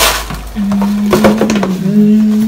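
A woman humming one long, steady note from about half a second in, over the brief crinkle and rustle of gift packaging being handled.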